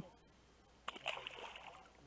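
Small bass released into the lake, a short faint splash about a second in as it hits the water and swims off.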